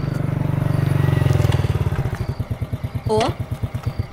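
A small motorbike engine running as the bike pulls up. It then settles into a slow idle with its firing strokes heard as an even run of low pulses.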